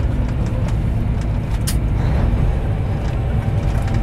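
Semi truck driving, heard from inside the cab: a steady low rumble of engine and road noise.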